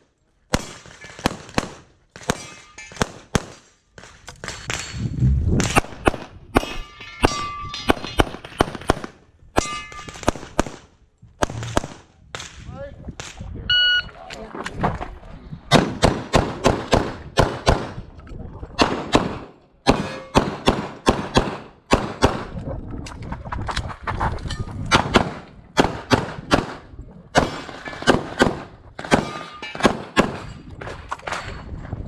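Semi-automatic pistol fired rapidly during a USPSA stage: dozens of shots, mostly in quick pairs and strings, broken by short pauses as the shooter moves between positions. A short ringing note sounds about halfway through.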